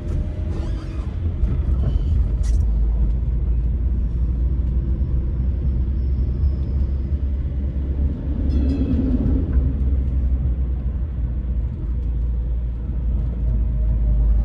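Steady low rumble of road and engine noise inside a moving car's cabin, with a brief passing sound about eight and a half seconds in as a streetcar goes by close in the oncoming lane.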